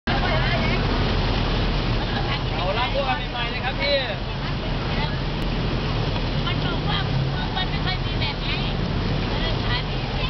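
Chestnut-roasting machine turning chestnuts through hot black grit in its metal pan: a steady churning rattle over a low motor hum. Voices and traffic carry on in the background.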